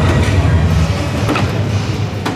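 Steady low din of a busy hall full of dart machines. About one and a half seconds in, a soft-tip dart strikes an electronic dartboard, which answers with a short electronic hit sound for a single.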